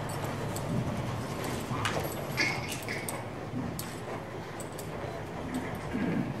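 A horse's hooves on the soft sand of a riding arena as it moves and comes to a halt, with a few light clicks.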